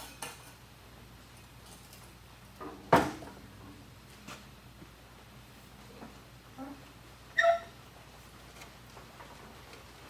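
Metal clanks and knocks from sheet metal being handled in a hand-operated sheet metal brake. A sharp loud clank comes about three seconds in, with lighter knocks after it, and a ringing metallic clang comes past the middle.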